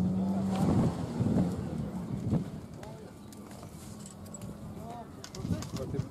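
Indistinct voices with a steady low hum in the first second and a half, then quieter murmuring and a few light clicks.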